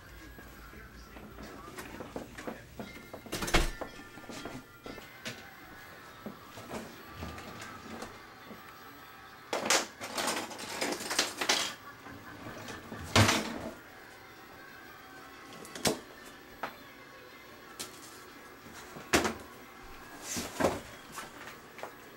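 Cardboard parcel box being handled and opened: scattered knocks and thumps, with about two seconds of rustling and tearing a little before the middle.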